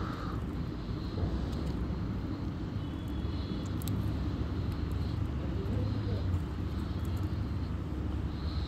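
A steady low rumble of background noise, with faint scratchy scrapes of a hand sweeping loose dry garden soil over small dead fish to bury them.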